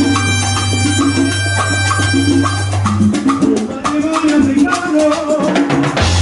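Salsa music from a band, with steady percussion, bass and keyboards. A held bass note gives way to a moving bass line about halfway through, where a singing voice also comes in.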